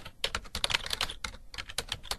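Typing on a computer keyboard: a fast, irregular run of key clicks.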